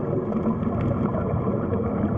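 Underwater ambience: a steady low rumble of water noise with faint scattered clicks.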